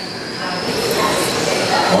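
Electric 1/10-scale RC race trucks with 21.5-turn brushless motors running laps on a carpet oval. Motor whine and tyre noise from several trucks blend into a steady hum in a large hall.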